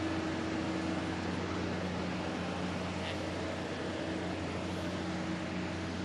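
Steady drone of running machinery: an even rushing noise with a low, constant hum under it.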